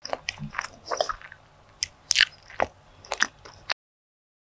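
Close-miked eating sounds: biting and chewing a pan-browned custard bun, a run of sharp crackly mouth clicks and smacks, loudest a little after two seconds in, that cuts off abruptly near the end.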